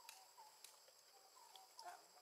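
Near silence: faint outdoor ambience with a steady high hum, a few faint short calls and a couple of small clicks.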